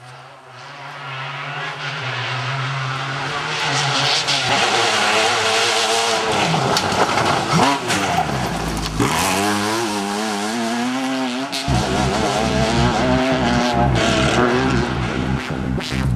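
Racing car engines revving hard. The sound fades in over the first few seconds, and the pitch repeatedly rises and falls as the cars accelerate and change gear.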